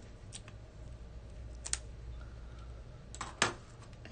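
A few light clicks and taps of a pointed craft tool and fingertips on paper while peeling the paper backing off mini foam adhesive dots, the sharpest clicks near the end.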